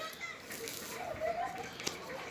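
Faint, distant children's voices at play, with a little soft rustling of plastic wrap being handled.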